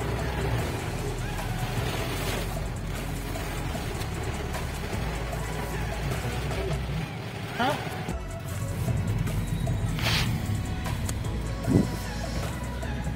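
Steady noise inside a car driving in heavy rain: rain on the glass and tyres on the wet road over a low engine hum.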